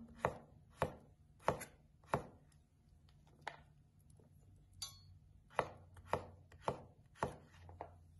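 Knife slicing zucchini on a wooden cutting board: sharp chops about two a second, in two runs with a pause in the middle.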